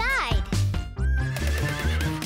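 A cartoon horse whinny sound effect at the start, over upbeat children's music with a steady beat; about a second in, a single high note is held to the end.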